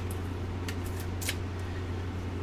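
Three short, light clicks and scrapes, a card and its clear plastic holder being handled, over a steady low electrical hum.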